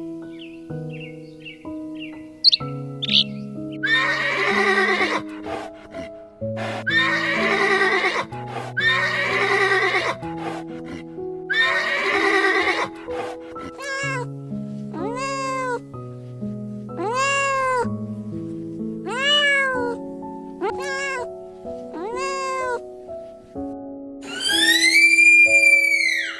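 Soft piano music with animal calls laid over it. In the first half there are four rough horse whinnies. From about halfway there is a run of cat meows, each rising then falling in pitch, and a longer, higher call comes near the end.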